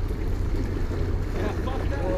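Wind buffeting the microphone in a steady low rumble, over small waves washing and splashing against the jetty rocks.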